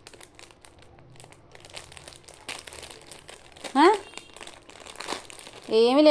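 Quiet crinkling and rustling of something being handled, made of many small crackles. A short rising voice cuts in about four seconds in, and speech begins right at the end.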